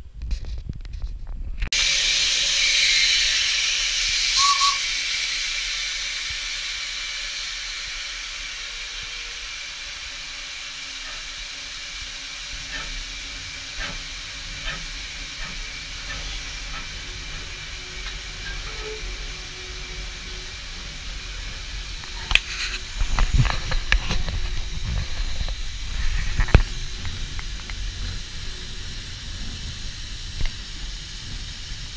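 Steam locomotive hissing steam on the footplate, starting suddenly about two seconds in, loudest for the first few seconds and then easing to a steady hiss. Near the end comes a run of knocks and low thumps.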